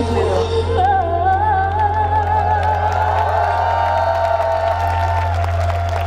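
Pop song over concert speakers: a sung note with a wavering pitch is held for about four seconds over a steady bass line.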